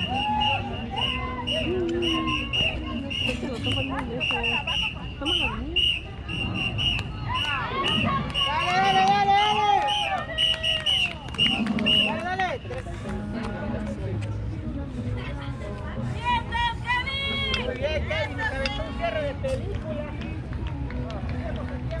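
Indistinct chatter of several people talking, with one voice nearer and louder in the middle. A regular high-pitched tick about twice a second runs under it and stops about halfway through.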